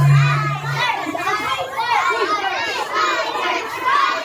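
A crowd of young children talking and calling out over one another in a hall, with a brief steady low hum in the first second.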